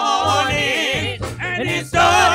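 Gospel praise-and-worship singing: voices with strong, wavering vibrato over a band's steady low accompaniment.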